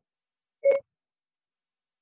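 A single short electronic beep, about a fifth of a second long, a little over half a second in.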